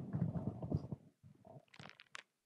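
Handheld microphone handling noise: low rumbling and small knocks as the mic is gripped and moved. It dies away about a second in, leaving a few faint rustles near the end.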